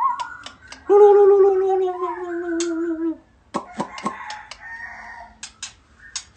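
White-rumped shama singing: clear whistled notes at the start, then a long, slightly falling low call, the loudest sound, from about one to three seconds in. Sharp clicks follow a little past three and a half seconds, then a softer warbled phrase and two more clicks near the end.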